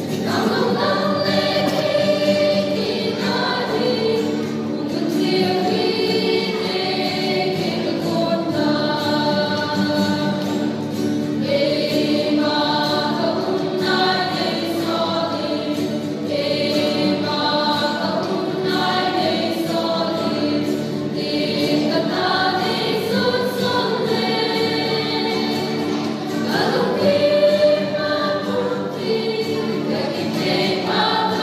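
A mixed choir of young men and women singing a hymn together in sustained phrases, accompanied by an acoustic guitar.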